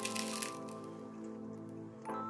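Crisp crust of a freshly baked whole wheat bread roll crackling as it is broken apart by hand: a quick burst of crackles in the first half second. Background music plays throughout.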